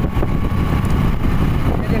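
Wind buffeting the microphone of a moving motorcycle, a loud uneven rumble, with the bike's engine running underneath.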